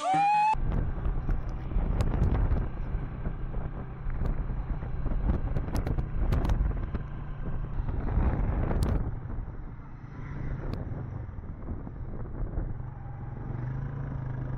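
Engine and road noise from a vehicle driving through town: a steady low engine hum under tyre and wind noise, with a few brief clicks. It is louder for the first several seconds and eases after about nine seconds.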